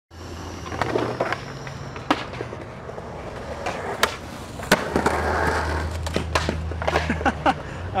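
Skateboards on rough concrete: wheels rolling with a series of sharp wooden clacks as boards pop, hit the ledge and land.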